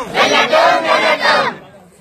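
Crowd of protesters shouting a slogan together, dying away about one and a half seconds in.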